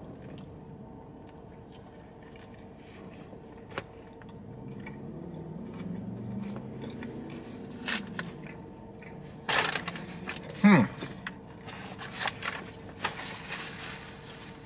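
A person chewing a bite of a tortilla wrap holding an extra crispy chicken tender and mac and cheese, with soft crunches and wet mouth noises. Low closed-mouth vocal sounds run through the chewing, including a short falling one about two thirds of the way in.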